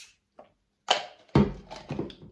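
A sharp knock about a second in, then a heavy dull thump and a couple of smaller knocks, like an object being handled and set down in a small room.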